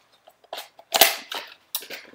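Sharp crackles and snaps of product packaging being handled, four or so strokes, the loudest about a second in.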